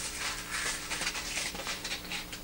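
Faint, irregular rustling and crinkling of a packaged pair of Skoy Scrub cotton scouring cloths being unwrapped from their cardboard sleeve and pulled apart by hand.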